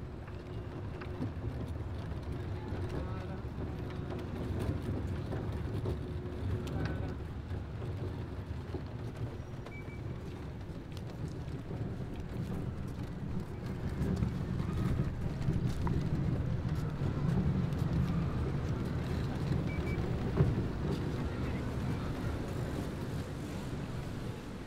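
City street ambience: a steady rumble of traffic with indistinct voices, and a faint steady hum through the first half. A single sharp click stands out about twenty seconds in.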